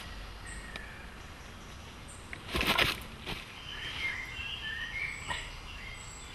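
Woodland ambience with small birds chirping in short calls, mostly in the second half. A brief rustling crunch about two and a half seconds in is the loudest sound, with a smaller one just after.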